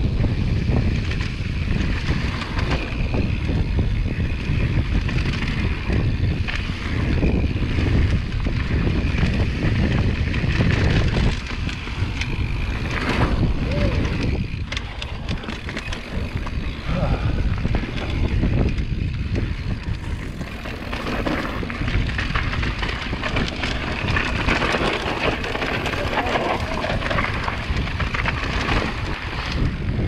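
Mountain bike descending a dirt singletrack: wind buffeting the microphone and tyres rolling over the trail, with frequent short rattles and knocks from the bike over bumps.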